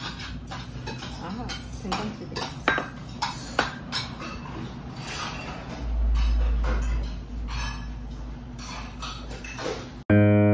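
Tableware clinking and knocking, with stainless-steel bowls and dishes set down on the table, over indistinct background chatter. A loud low rumble lasts about a second and a half near the middle.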